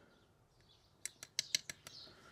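Small aluminium tin's metal lid being twisted off: a quick run of small sharp clicks and squeaks in the second half.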